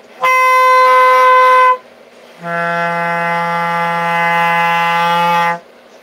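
Bass clarinet played twice: first a squeaked note, much higher than intended, held about a second and a half, then after a short gap the intended open G, a low steady note held about three seconds.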